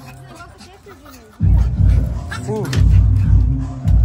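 A dog whining faintly, then a loud low rumble that starts suddenly about a second and a half in and runs on.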